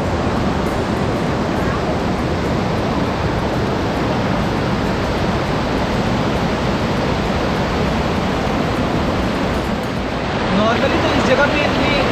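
Fast-flowing mountain river, swollen after rain upstream, giving a steady rush of water. A man's voice starts near the end.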